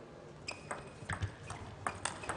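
Table tennis ball clicking off the table and the players' rubber-faced bats in a fast doubles rally: a run of short, sharp clicks, about one every third of a second, starting about half a second in.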